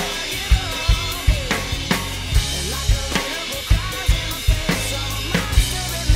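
Acoustic drum kit played along to a recorded rock song: kick drum and snare hits with cymbals in a steady rock beat, over the song's bass and guitar backing.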